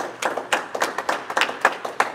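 Scattered hand claps, about four or five a second at an uneven pace, echoing in a large room.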